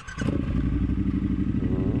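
Triumph Scrambler 1200's parallel-twin engine being started: a brief burst of starter cranking, then it catches almost at once and settles into a steady, evenly pulsing idle.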